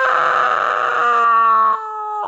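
A woman's voice drawing out a long, exaggerated "meeeooowww" in imitation of a yowling cat, held at a high pitch and sliding slowly down before cutting off sharply just before the end.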